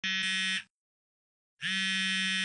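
Smartphone ringing for an incoming call: a buzzy, buzzer-like ring lasting just over half a second, then a second ring starting near the end.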